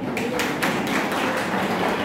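Audience applauding: many hands clapping in a quick, irregular burst that begins just after the start.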